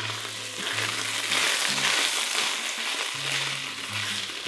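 Ground beef sizzling in a stainless steel pot as a wooden spatula stirs tomato paste through it, a steady hiss that swells toward the middle.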